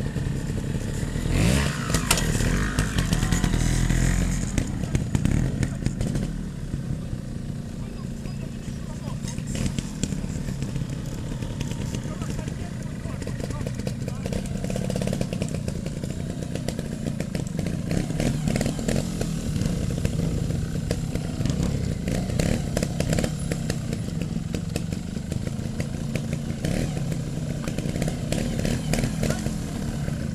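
Trials motorcycle engines running near idle, with a louder stretch of revving a couple of seconds in.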